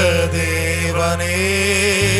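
A voice chanting in long held, slowly gliding notes over a steady low drone. The drone shifts to a new note at the very end.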